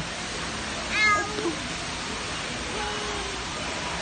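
A toddler's short high-pitched squeal about a second in, with a fainter lower sound near the three-second mark, over a steady background hiss.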